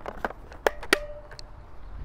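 Several sharp plastic clicks and knocks in the first second as a battery pack is pushed and latched into a Husqvarna T536LiXP battery top-handle chainsaw. A short steady tone follows the loudest click.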